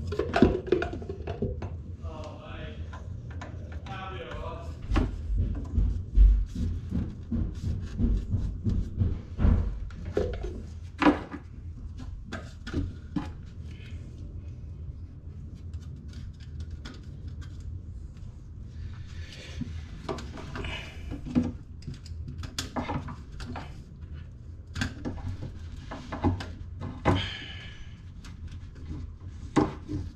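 Plastic waste-pipe fittings under a basin being handled and fitted by hand: scattered knocks and clicks of plastic parts, with low rumbling handling noise a few seconds in.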